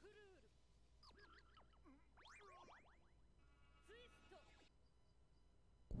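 Near silence, with faint anime dialogue and effects far in the background and a short held tone about three and a half seconds in.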